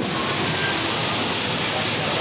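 Steady, even rushing of wind over the microphone on an open deck.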